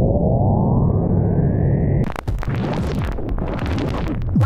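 Synthesizer intro: a rumbling low drone with a tone that slides down and back up. About halfway through it cuts abruptly to loud, crackling static noise.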